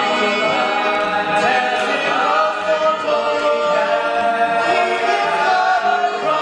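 A male ensemble singing a musical-theatre song, a lead voice joined by the group, with notes held long.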